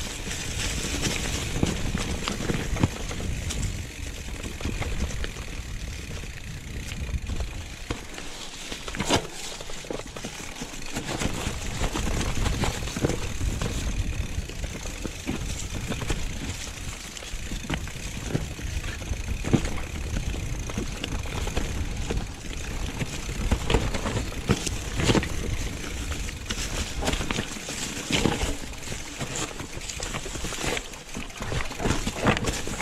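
Mountain bike riding down a rough trail over dry leaves and stones: steady tyre noise and a low rumble, with frequent sharp knocks and rattles as the bike hits rocks and bumps.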